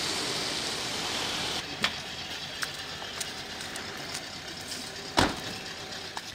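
A car driving past on a wet road, its tyres hissing, dying down about a second and a half in. After that a quieter background hiss with a few sharp clicks, and a louder knock about five seconds in.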